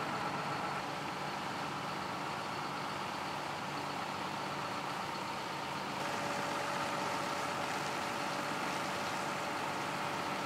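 130-horsepower John Deere 6630 tractor running steadily while it pulls a Tramspread 24-metre dribble-bar slurry applicator, with a steady whine over the engine. A second, lower steady tone joins about six seconds in, where the sound gets slightly louder.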